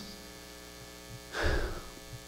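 Steady electrical mains hum with many overtones, with a brief soft noise about one and a half seconds in.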